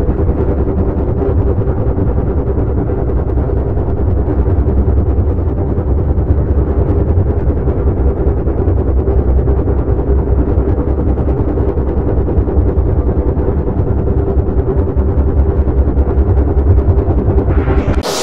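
Heavily distorted, digitally processed audio: a dense, fast low rattle with steady droning tones underneath, changing abruptly at the very end.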